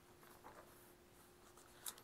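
Faint rustling of thin Bible pages being turned by hand, with a short soft tap near the end, over near silence.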